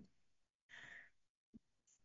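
Near silence in a pause in a woman's speech, with one faint, short in-breath a little before the middle and a tiny click after it.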